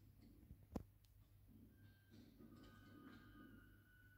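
Near silence: room tone with a steady low hum and a single sharp click a little under a second in.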